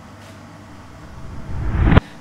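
A rising whoosh transition effect: a low rumble that swells over about the last second and cuts off abruptly.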